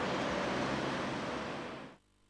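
Steady rushing background ambience with no distinct events, fading out over the last half second or so into silence.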